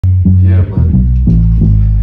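Live band playing, loudest in an electric bass line of held low notes that change every few tenths of a second, with a man's voice over the PA on top.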